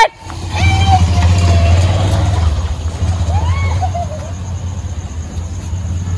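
Motorcycle engine running close by, a steady low drone that eases off somewhat after about four seconds, with a few faint short cries over it.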